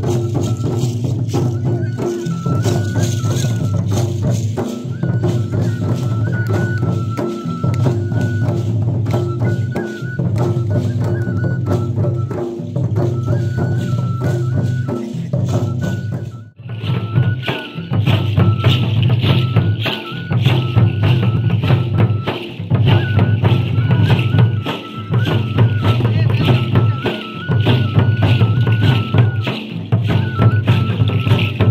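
Tribal dance music with barrel drums beating a dense, steady rhythm under a high, repeating melody. The music cuts out for a moment about halfway through and comes back brighter and louder.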